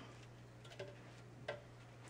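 Near silence with a few faint light clicks and taps as pieces of sourdough bread are put into a plastic food processor bowl, the sharpest about one and a half seconds in. A low steady hum runs underneath.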